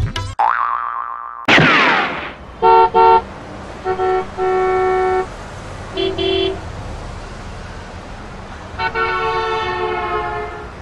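A rising pitched glide and a falling swoosh, then vehicle horns honking over steady traffic noise. First come two quick toots, then a longer honk, a lower-pitched beep about six seconds in, and a long honk near the end.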